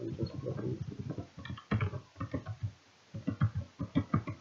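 A man's voice speaking low and indistinctly in short broken phrases.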